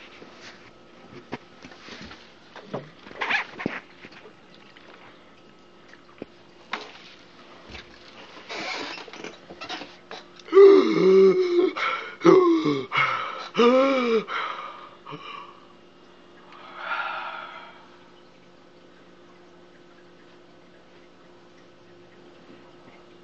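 A man's strained vocal noises while trying to chug a drink: scattered clicks and breaths, then about ten seconds in three loud, drawn-out cries, each falling in pitch, and a short breathy exhale a couple of seconds later.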